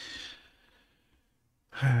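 A man's sigh: a single exhaled breath of about half a second that fades out, followed by a brief spoken 'uh' near the end.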